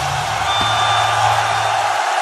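A live punk band's last low note holding through the amplifiers after the song stops, cut off near the end, under the steady noise of a large cheering crowd.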